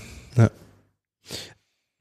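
A man says a short "ja", then about a second later takes an audible breath, like a sigh; between and after these the sound track drops to dead silence.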